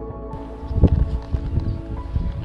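Background music with steady held tones, under a run of low, irregular thuds of footsteps and phone handling while walking through brush, loudest about a second in.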